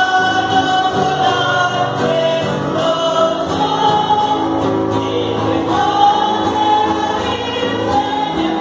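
A group of voices singing a hymn in long held notes.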